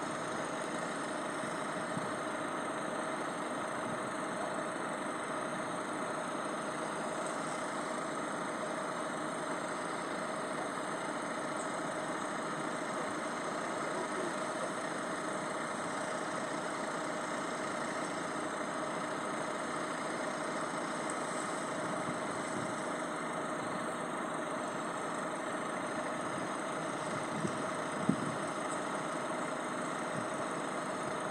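Vehicle engine idling steadily while stationary, with one short sharp click near the end.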